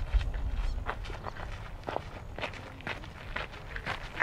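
Footsteps crunching on a gravel path at a walking pace, about two steps a second.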